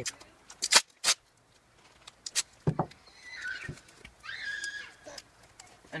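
Duct tape being pulled and torn off the roll in a few quick, sharp rips, then a couple of short, high squeaks.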